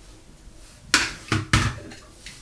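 Three sharp knocks in quick succession, starting about a second in, of hard objects such as makeup items being set down or tapped on a hard surface.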